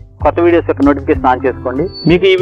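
A man talking in Telugu over background music.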